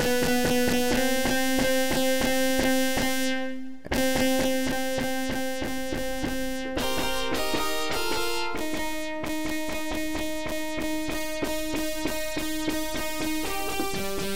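Xfer Serum software synthesizer patch playing sustained chords that change every few seconds, with a fast rhythmic pulsing running through them. A noisy wavetable gives the tone a breathy chiff, and chorus, compression and reverb sit on it.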